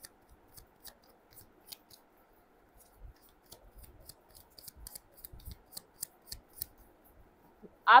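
Faint, irregular small clicks and ticks, with a couple of soft low thumps about three and five and a half seconds in. A woman's voice starts speaking right at the end.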